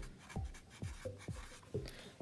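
A pen writing by hand on watercolor paper: a few faint, short strokes as a word and an arrow are written.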